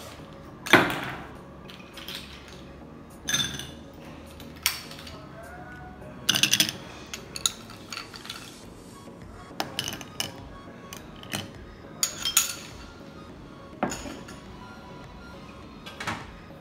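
Ice cubes dropped one at a time into a highball glass with a bar spoon, each landing with a clink or knock against the glass and the ice already in it, every second or two.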